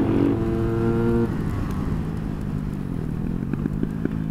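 Motorcycle engine held at steady high revs, then the throttle closes a little over a second in and the revs drop away for the bend. Near the end a quick run of sharp pops comes from the exhaust on the overrun.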